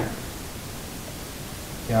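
Steady low hiss of background noise with no distinct sound in it; the electric hand mixer is not running.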